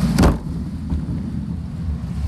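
A sharp heavy thud just after the start, the narrowboat's bow striking the lock gate on the tidal current, followed by a steady low rumble of the boat's engine with wind noise on the microphone.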